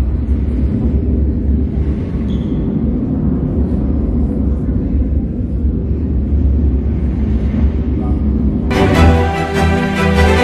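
Deep, steady rumbling from an immersive projection exhibit's soundtrack. The baroque background music cuts back in near the end.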